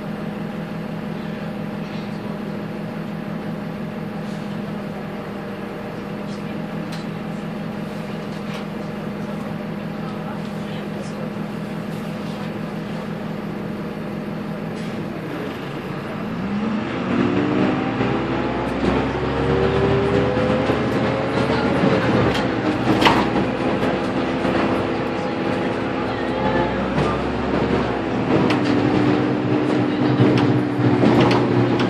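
Karosa B951E city bus's diesel engine, heard from inside the bus, idling with a steady low hum. About halfway through the bus pulls away: the engine's pitch climbs, drops back once at a gear change, and climbs again.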